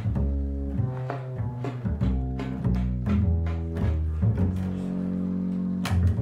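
Double bass playing a free-improvised line of low notes, then holding one long note, with a sharp click just before the end.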